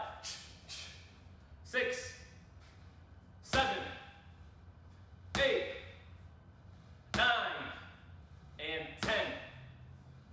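A man's voice in short, sharp calls, six of them about every two seconds, each starting abruptly and dropping in pitch.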